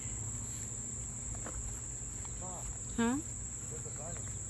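Steady high-pitched drone of insects singing in the summer garden, unbroken throughout.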